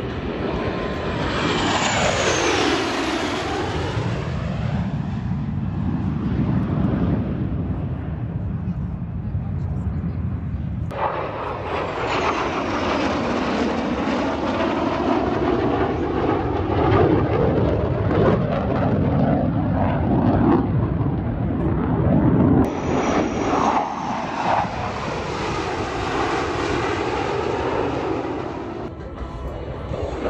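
A formation of USAF Thunderbirds F-16 fighter jets making low passes, their jet engine noise sweeping down in pitch as each pass goes by. The sound changes abruptly about 11 seconds in and again near 23 seconds, as another pass begins.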